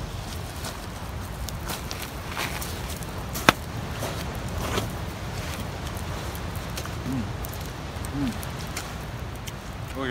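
Steady outdoor rumble of wind and surf on the microphone, with scattered faint crackles and one sharp click about three and a half seconds in. There are two short low hums near the end.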